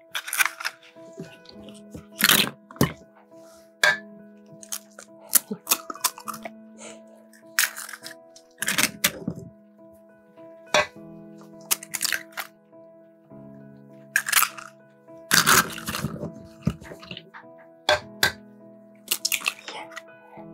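Eggs cracked one after another on the rim of an enamel bowl, a sharp crack every few seconds, over soft background music of long held notes.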